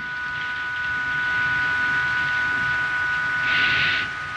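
A steady electronic tone of several pitches held together, from cath-lab equipment, over a hiss that grows louder near the end.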